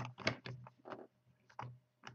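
A few faint, irregular clicks and taps from hands working the plastic keyless chuck of a cordless drill while fitting a thin wire into its jaws.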